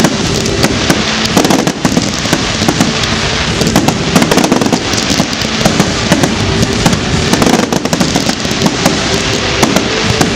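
Fireworks display firing fans of comets and bursting shells in rapid succession: a dense, unbroken volley of loud bangs and crackles with no pause.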